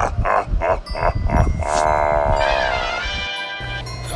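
A man's mocking laugh, several quick 'ha' bursts, then one long drawn-out laugh that slowly falls in pitch, with music behind it.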